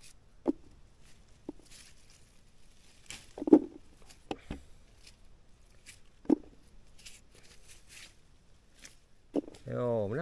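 Red currant bush leaves and twigs rustling as berry clusters are stripped off by hand, with a few short soft knocks scattered through.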